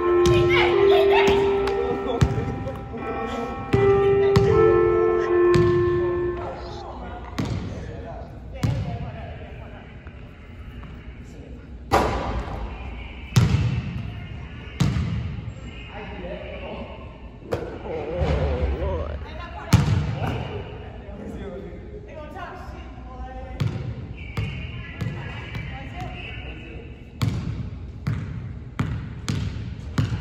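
Basketball bouncing on a gym's hardwood floor, single sharp bounces every second or few seconds. A short music passage plays over the first six seconds, then stops.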